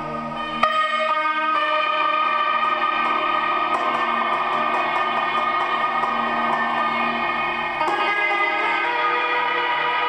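Lap steel guitar played through a chain of effects pedals and an amplifier: a sustained, echoing drone of layered steady tones. A fresh note is struck about half a second in, and the drone shifts again near eight seconds.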